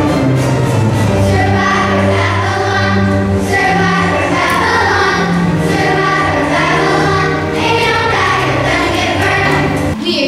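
Children's choir singing a song together over an instrumental accompaniment with a steady bass line.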